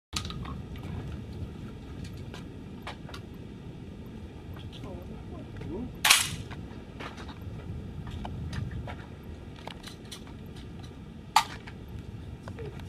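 Two shots from a Baikal semi-automatic 12-gauge shotgun, about six seconds in and again about five seconds later, each sudden with a short ringing tail, over a steady low rumble.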